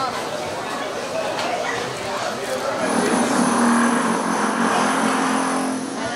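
Busy crowd of shoppers talking, a steady murmur of many voices. About three seconds in, a steady machine hum with a thin high whine comes in over it and is the loudest sound, stopping just before the end.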